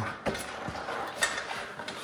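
Handling noise from a dirt bike wheel with its knobby tire as it is lifted and carried, with a few light knocks spread through the moment.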